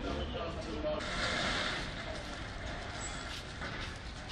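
Outdoor street ambience: a steady low rumble with faint, indistinct voices, and a louder hiss about a second in that lasts around a second.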